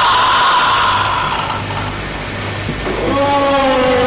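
Drawn-out, eerie pitched tones that slowly glide downward, over a steady low hum. One fades out about a second and a half in, and a new one rises in near three seconds and then sinks slowly.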